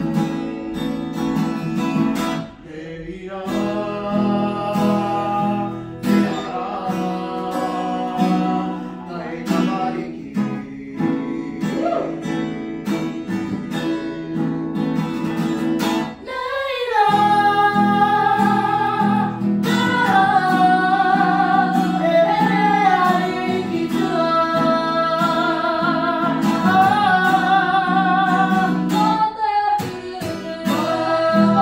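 A woman singing to her own strummed acoustic guitar, heard from across a room. The voice is soft at first and comes in stronger about halfway through, with wavering held notes over the steady chords.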